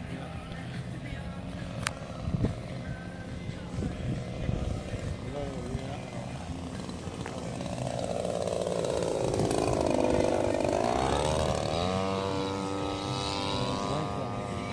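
Radio-controlled model warplane's gas engine flying past: faint at first, it grows loud as the plane comes by about ten seconds in, its pitch sagging and then rising before it holds steady near the end.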